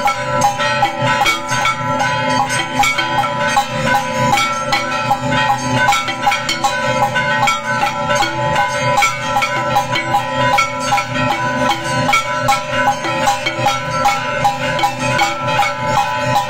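Hindu temple aarti accompaniment: bells, cymbals and drums struck rapidly and continuously, with several bell tones ringing on steadily under a fast, even run of strikes.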